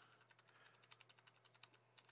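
Faint computer keyboard typing: a run of soft keystroke clicks, mostly in the second half, over near silence.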